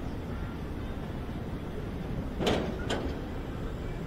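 Wind rumbling on the microphone as a tower swing ride circles high in the air, a steady low rush. About halfway through come two short sharp sounds, half a second apart, the first the louder.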